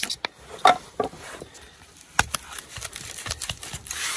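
Handling sounds of black tape being wrapped and pressed onto foam pipe insulation, with tin snips in hand: scattered clicks and knocks and a light rustle of a hand on the foam. Two sharp clicks stand out, one under a second in and one about two seconds in.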